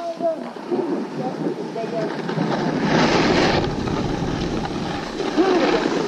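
A snowboard sliding and scraping over groomed snow, with wind buffeting the action camera's microphone; the scrape swells loudest about three seconds in.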